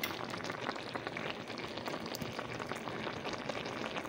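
Udon noodles simmering in a black pepper and coconut aminos sauce: steady bubbling with many small pops.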